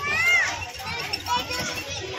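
Children's voices on a fairground ride: a loud, high-pitched child's cry that rises and falls in the first half-second, then mixed children's chatter and shouts.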